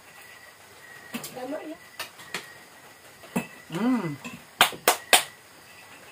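Metal spoons clinking against ceramic plates during a meal: scattered sharp clicks, the loudest three in quick succession in the second half.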